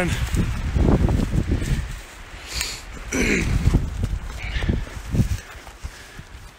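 Wind gusting over the microphone in low rumbling bursts, with footsteps and brushing through ferns and undergrowth. A brief vocal sound about three seconds in.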